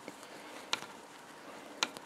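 A metal crochet hook being worked through yarn in double crochet stitches, making a few short, sharp clicks over faint room hiss; the clearest click is about three quarters of a second in and another comes near the end.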